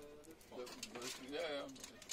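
A soft, murmured voice humming twice, over faint crinkling of aluminium foil as anchovies are pressed into flour.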